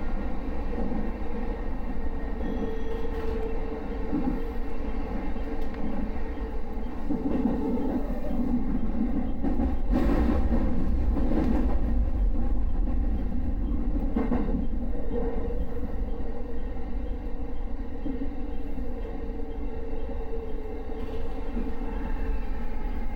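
Electric commuter train running, heard from inside the front car: a continuous low rumble with a steady tone running through it. A few sharp clicks come from the wheels crossing the junction's points, about ten and fourteen seconds in, as it runs into the station.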